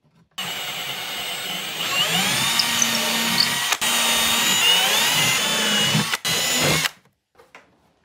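Milwaukee M18 Fuel cordless drill boring through the shell of a vintage suitcase, its motor whine dipping and recovering as the bit loads up. It runs for about six seconds with two brief stops, starting just after the beginning and stopping about a second before the end.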